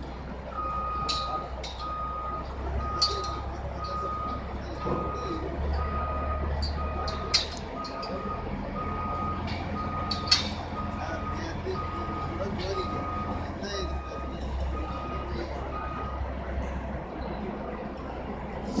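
A heavy vehicle's warning beeper, a single steady tone repeating about once a second, stops about two seconds before the end. Under it runs the low drone of a heavy engine at work, and two sharp knocks stand out partway through.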